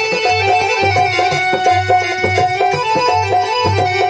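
Telugu devotional bhajan music: an electronic keyboard holds a sustained melody over a steady rhythm on a dholak, a two-headed barrel drum, with a deep drum beat about every half second.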